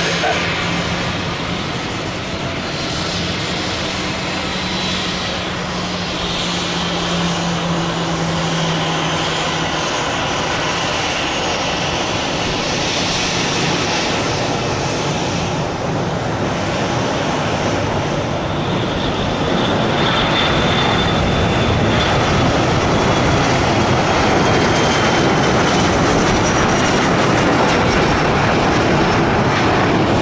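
Twin rear-mounted turbofan engines of an Embraer ERJ-145 regional jet running at takeoff power, a steady jet noise that grows louder about two-thirds of the way through. A high whine drifts slightly down in pitch late on.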